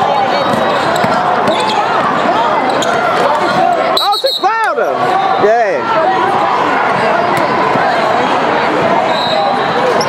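Basketball game on a hardwood gym court: sneakers squeaking, the ball bouncing, and players' and spectators' voices echoing in a large hall. A few louder squeals come about four to six seconds in.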